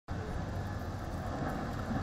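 Large mining haul truck's diesel engine and the surrounding open-pit machinery running, a steady low drone.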